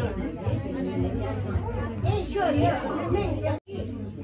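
Several people talking at once, an overlapping chatter of voices with no single clear speaker. It cuts out abruptly for a moment near the end.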